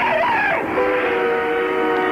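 A woman's voice from the film ends about half a second in, then the film's score holds a sustained chord of several steady tones.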